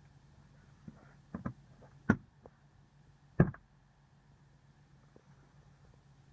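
Light clicks and knocks from a 2015 BMW 320i's driver sun visor being swung and clicked on its pivot, the two loudest about a second apart near the middle, over a faint low hum.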